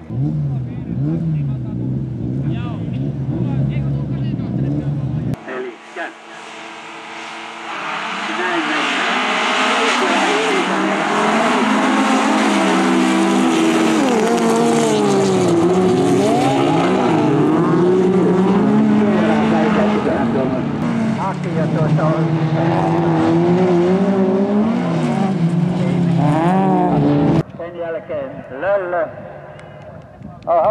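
Several folk-race (jokkis) cars' engines running flat out on a gravel track, their pitch climbing and dropping with each gear change and throttle lift. A steadier engine note is heard in the first five seconds, and the full-throttle racing sound fills the rest from about eight seconds in.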